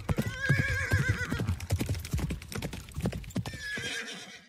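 Rapid horse hoofbeats with a horse whinnying: one wavering whinny in the first second and a half, and a shorter call near the end.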